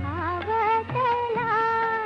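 Old Hindi film song: a woman sings a long, ornamented line with vibrato over a light drum accompaniment.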